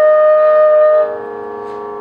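Carnatic bamboo flute holding the long closing note of the piece, which stops about a second in, leaving a steady drone sounding on its own.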